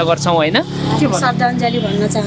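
Voices talking over a steady low hum of road traffic.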